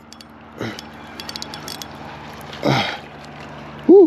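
A spinning reel being cranked to bring in a small hooked fish, with a run of light clicks. A faint steady low hum runs underneath.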